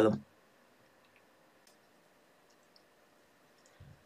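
Near silence with a few faint, brief clicks, spread over the pause.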